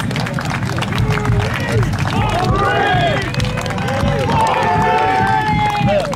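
A column of marching men: footsteps and clattering gear on dry ground, with several men's voices calling and shouting over one another from about two seconds in, and one long drawn-out shout near the end.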